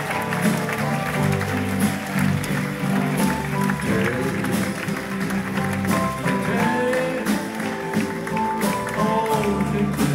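Live pop band playing an instrumental passage: electric guitars, bass, drums and keyboard, with audience hand claps over the music.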